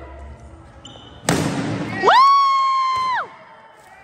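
A stick whacks a cardboard piñata: one sudden loud hit with a noisy burst lasting under a second. Right after it comes a high-pitched yell, held steady for about a second before it cuts off.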